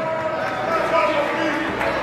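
Indistinct talking from people around the ring over the general hubbub of a gym hall.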